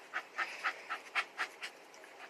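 Miniature Australian shepherd panting, quick even breaths about four a second.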